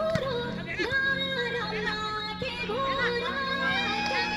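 A Nepali song: a singing voice carrying a bending, gliding melody over steady sustained accompaniment.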